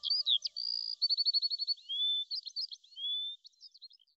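Woodland birdsong: quick chirps, a rapid trill and rising whistled slurs from more than one bird. The last of a soft held music tone fades out in the first second.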